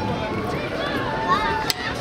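Indistinct voices of people nearby, over a steady background hum of noise, with one sharp click about three-quarters of the way through.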